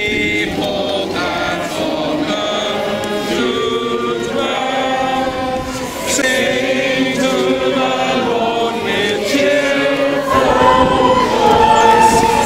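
A crowd of people singing a hymn together, moving through slow held notes.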